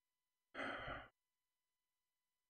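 A man sighs once, a short breath out lasting about half a second.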